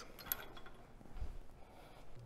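Faint metal clinks of the steel lifting chain and hook on an engine hoist's boom as they are handled, with a soft low thump a little over a second in.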